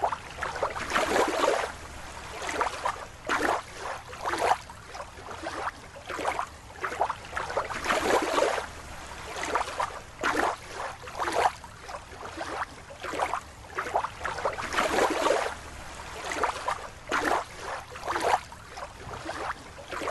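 Water splashing and sloshing in irregular surges, one every second or so.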